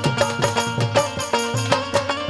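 Instrumental passage of a live Hindu devotional bhajan band: a hand drum beats a quick, steady rhythm with bending bass strokes under sustained melodic notes.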